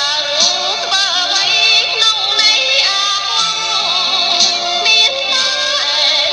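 A song: a voice singing a wavering, ornamented melody over instrumental accompaniment with a steady beat.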